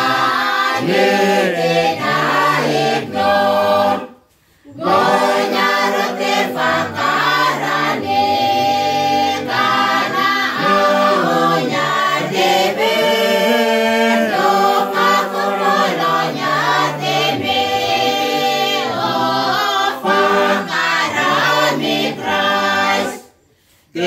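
A mixed group of carolers singing a Christmas carol together, unaccompanied, several voices at once. The singing cuts out briefly twice, about four seconds in and near the end.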